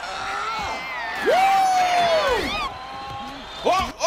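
A man's long, high yell, held for about a second and then falling away, among shorter cries over faint crowd noise.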